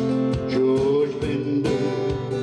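Acoustic guitar strummed in a steady country rhythm, about three strums a second, chords ringing between strokes.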